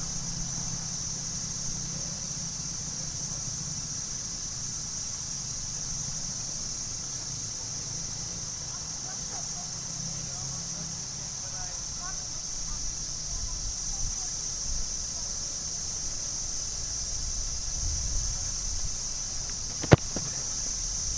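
Open-field outdoor ambience: a steady high-pitched hiss and a low rumble of distant traffic. Right at the end comes a single sharp thud of a boot kicking a football off a tee.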